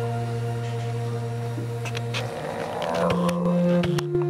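Live drone music from a singer and a saxophonist: a steady low drone with overtones, which breaks off about two seconds in into a breathy, wavering passage, then a higher held note near the end.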